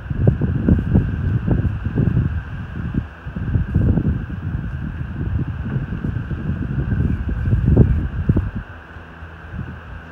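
Wind buffeting the microphone in irregular low gusts, easing off near the end.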